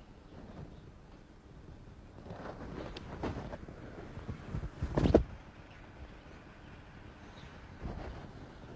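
Movement sounds of a xingyi form performed on stone paving: silk clothing swishes and footwork scuffs, with one sharp impact about five seconds in, the loudest sound.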